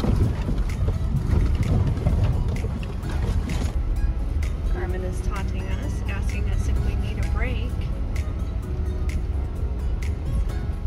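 Truck cabin rumble on a rough, rocky dirt road: a steady low drone with frequent rattles and knocks as the truck jolts over the rocks. From about halfway through, faint wavering pitched sounds sit over it.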